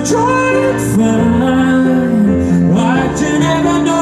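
A man singing over an upright piano, his voice gliding up and down between held notes while the piano sustains chords underneath.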